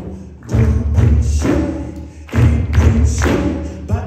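Live djembe hand-drumming with deep bass strokes, played in phrases that drop away briefly about half a second in and again just after two seconds in, with the audience clapping along.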